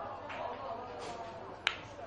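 Open-air sound of a football pitch with distant players' voices and a single sharp click about one and a half seconds in.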